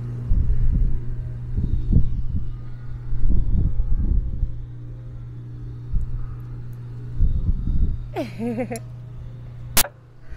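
Wind buffeting the microphone in uneven low rumbling gusts over a steady low hum. About eight seconds in comes a brief voice sound that falls in pitch.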